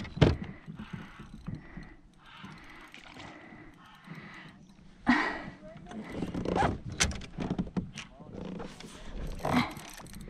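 A woman's wordless exclamations and strained cries while fighting a hooked fish, loudest and most frequent in the second half. There is a sharp knock right at the start and a few clicks among the cries.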